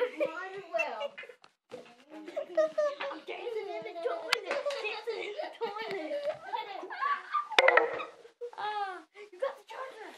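Children's voices chattering excitedly and giggling, with a sharp, loud noise about seven and a half seconds in.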